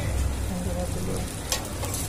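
Burger buns frying on a flat griddle: a steady sizzle, with one sharp click about one and a half seconds in.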